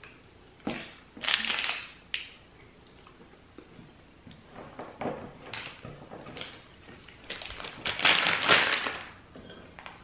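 Plastic candy bag crinkling as it is handled, in irregular bursts, the loudest about eight seconds in.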